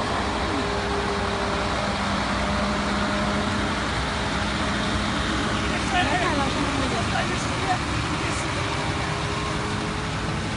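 Heavy truck's diesel engine pulling a long trailer up a hill, a steady drone. Voices break in briefly about six seconds in.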